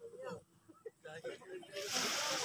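Quiet men's voices talking and calling out, with a rush of noise coming in near the end.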